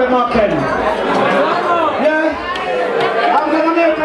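Chatter of several voices talking over each other in a crowded room, with no music playing.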